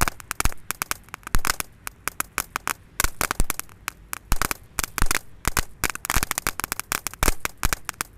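Crackling ground fountain firework burning, giving off a dense, irregular stream of sharp cracks, several each second.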